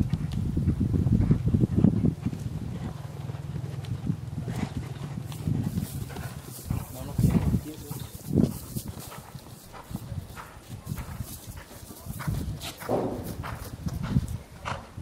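Hoofbeats of a horse cantering over sand arena footing, a run of dull thuds that are loudest in the first few seconds.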